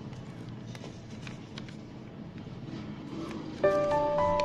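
Background music: a quiet stretch, then a melody of ringing, held notes comes in loudly near the end.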